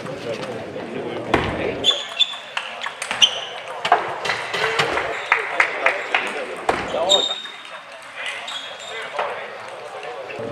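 Table tennis rally: the celluloid ball clicking off rubber rackets and the table in quick succession, with short squeaks of players' shoes on the court floor. A low murmur of voices from the hall lies underneath.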